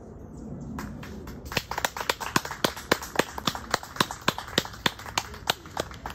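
Applause from a small audience: a few people clapping by hand, one pair of hands close by at about three to four claps a second, starting within the first two seconds.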